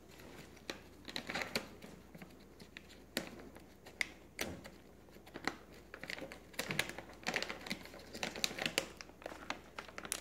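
Crinkling and rustling of a plastic treat bag being handled, with scattered sharp clicks.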